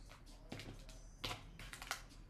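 A few faint, short clicks and taps of tarot cards being handled on a tabletop, about half a second in, a little after a second, and near the end.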